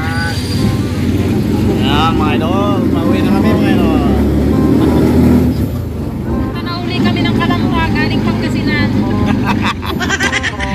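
Mini jeepney engine running with a steady low rumble, heard from inside the open passenger cabin, a little louder around the middle.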